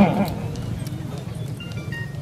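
A short pause in a man's speech over a megaphone public-address system: a brief vocal sound right at the start, then a steady low hum from the loudspeakers, with a few faint short high tones near the end.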